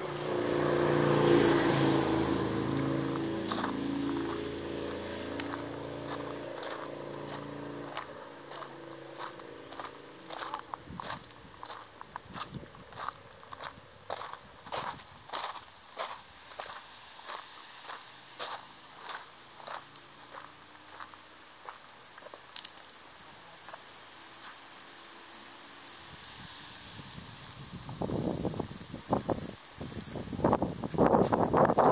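A motor vehicle goes by, loudest in the first seconds and fading away. Then come footsteps crunching on gravel, a little under two steps a second, which stop about two-thirds of the way through; near the end a louder crunching and rustling starts up.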